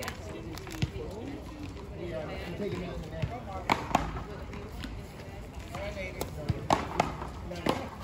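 Faint voices talking, with several sharp knocks of a paddleball on the hard court or wall, a couple near the middle and a few more close together near the end.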